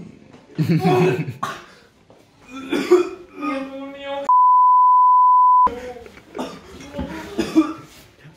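Censor bleep: a steady, high single-pitched beep lasting about a second and a half, a little past the middle, with all other sound blanked out beneath it. It replaces a word, the usual way a swear word is covered. Coughing and laughter come before and after it.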